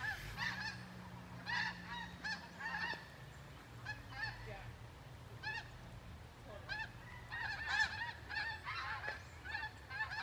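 A flock of geese flying overhead, honking: many short, faint calls coming irregularly and often overlapping.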